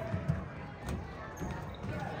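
Basketball bouncing a few times on a hardwood gym floor as it is dribbled, with faint chatter from the gym behind it.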